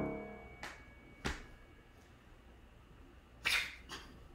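Grand piano's final chord ringing out and fading away within the first half second as the hands lift off the keys. Then it is quiet but for a couple of faint clicks and a brief breathy noise near the end.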